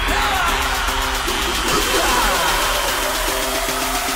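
Loud music with a steady low bass and a short melodic figure repeated in quick notes.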